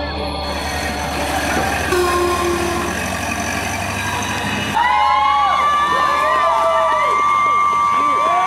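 Crowd cheering, then about five seconds in a vintage car's horn sounds one long steady blast over whoops and cheers from the onlookers.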